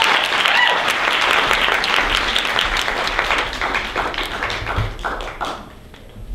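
Audience applauding, dense and steady, then thinning out and dying away about five and a half seconds in.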